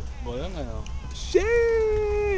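A person's voice calling out wordlessly: a short sliding call, then a long, high held note that falls off at its end, over a steady low rumble.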